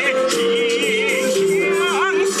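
Chinese folk song: a sung melody held with strong vibrato over steady instrumental accompaniment, with a swooping pitch glide near the end.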